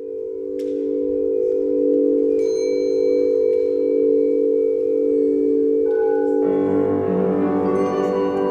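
Crystal singing bowls sounding several pure, sustained tones that swell in and hold, the lowest with a slow throb about once a second. About six and a half seconds in, a cluster of higher, bell-like ringing tones joins them.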